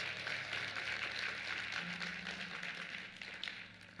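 Applause and hand-clapping from a small congregation, fading away toward the end.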